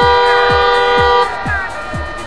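A vehicle horn blowing one long, steady blast with two or more tones, which cuts off a little over a second in. Under it runs music with a thumping beat, about two beats a second.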